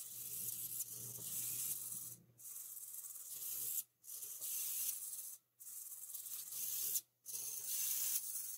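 Cheap blue micro RC servo running in repeated sweeps, its small motor and plastic gear train giving a high whirring buzz about a second and a half at a time, with short stops in between. Freshly reassembled, it is not working right; the owner wonders whether its potentiometer is misaligned.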